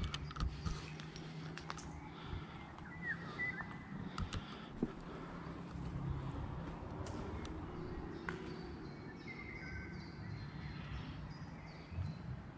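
Footsteps crunching over rubble and debris, with a few short bird calls around three seconds and again near the nine-second mark over a steady low hum.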